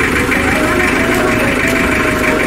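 Pickup truck's engine idling steadily.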